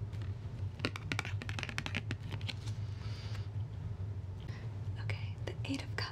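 Fingers handling and tapping a tarot card close to the microphone: a quick run of sharp clicks and taps, then a few more near the end, over a steady low hum.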